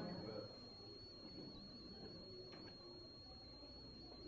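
Near silence: faint room tone under a thin, steady high-pitched whine.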